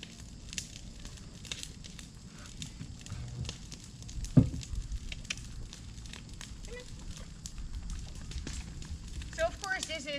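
Brush-pile fire crackling, with frequent sharp pops over a low rumble. A single heavy thump comes about four and a half seconds in.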